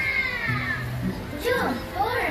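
Children's high-pitched voices calling out over a busy crowd, with music in the background. One long call falls in pitch during the first second, and more calls come just past halfway.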